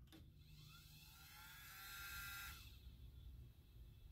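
Faint whir of the Revox B790's linear-tracking tonearm drive moving the arm across the record: a soft whine that glides up and down, from about half a second in until nearly three seconds.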